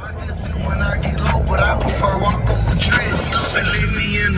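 Music with vocals playing over the running engine and road noise of an open-cockpit Polaris Slingshot on the move, with a steady low rumble underneath.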